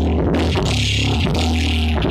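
Live rock band playing loud, with held bass guitar notes under electric guitar and bright cymbal washes.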